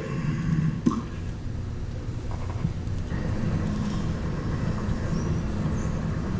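Steady outdoor background noise, like distant traffic, from a video's soundtrack played over a hall's speakers, with a single click about a second in.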